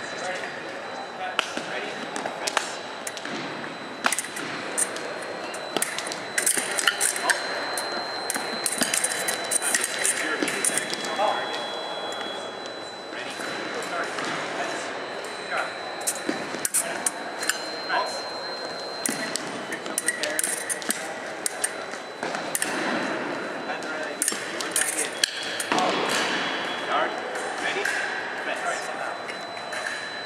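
Foil blades clashing in quick runs of sharp metallic clicks over the echoing chatter of a crowded gym. A thin, high electronic tone from the electric scoring box sounds several times, a second or two each, as touches register.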